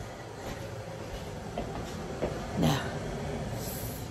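Kettle heating up short of the boil, a steady rushing, rumbling noise: the water has not boiled yet.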